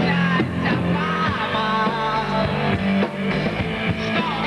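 A live rock band playing, electric guitar over bass and drums, with a man singing into the microphone.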